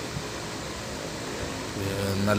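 Steady road noise of a moving vehicle: an even rushing hiss with no distinct knocks or changes.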